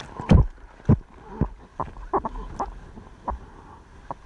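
Water slapping and splashing against a surfboard and its nose-mounted camera as the longboard runs over choppy water. It comes as a string of sharp slaps, about two a second and loudest just after the start, over a low rush of moving water.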